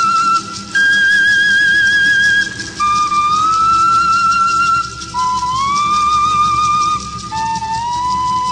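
Background music: a flute-like wind instrument plays a slow melody of long held notes with vibrato, each gliding up into pitch and then held for about two seconds, the line stepping lower over the phrase.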